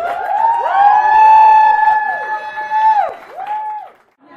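Several audience voices whooping and cheering, overlapping rising-and-falling 'woo' calls, with one held for about two seconds before they die away near the end.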